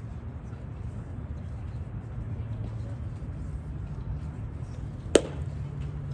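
A single sharp crack of a pitched baseball meeting the plate area about five seconds in, over a steady low outdoor hum.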